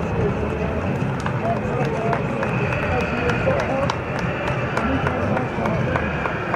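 Overlapping chatter of several men's voices talking at once, with no single clear speaker, over a steady low background rumble.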